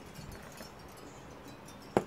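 Quiet background, then a single sharp clink near the end as a stemmed beer glass is picked up off a glass tabletop.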